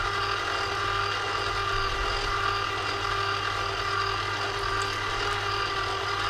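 Electric sauce maker's motor running steadily, its paddle turning by itself to stir a thickening béchamel sauce; a steady whirring hum.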